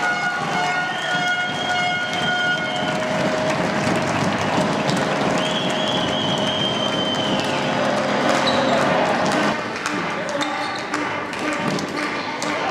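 Spectators and players cheering and shouting in a sports hall after a floorball goal, the noise echoing, with a couple of held high-pitched tones above it. The cheering drops away near the end.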